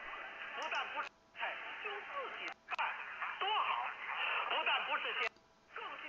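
Medium-wave AM broadcast of CNR1 (China National Radio) played back from a recording: Mandarin talk, narrow-band with faint hiss. The audio cuts out briefly about a second in, again at about two and a half seconds and just past five seconds, as playback flips back and forth between the station's parallel frequencies, 1215 and 981 kHz.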